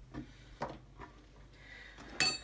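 A few faint, short knocks of a herring fillet and hands being handled on a wooden cutting board, the second knock the loudest.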